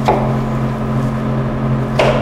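A chef's knife cuts through a tomato and knocks onto a cutting board twice, once at the start and once at the end, over a steady low machine hum.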